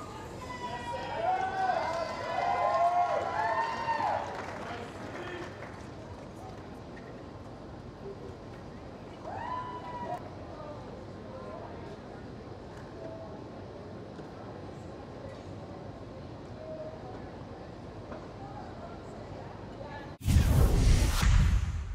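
Indistinct voices talking during the first few seconds and once more briefly about ten seconds in, over a steady outdoor tennis-court ambience hiss.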